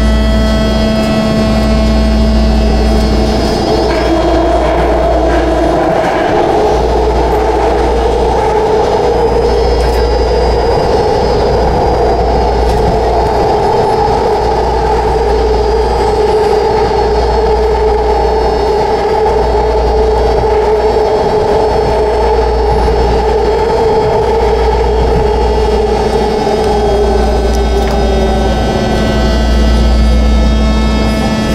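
BART train running at speed, heard from inside the passenger car: a loud, steady rumble of wheels on rail with a droning two-pitched tone that rises in about four seconds in and fades out near the end.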